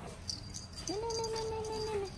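A baby macaque giving one long whining cry about a second in, rising at first and then held steady for about a second.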